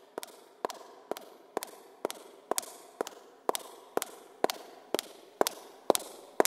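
Footsteps of hard-soled shoes on a hard corridor floor, an even walking pace of about two steps a second, each step a sharp click with a short echo, growing louder as the walker approaches.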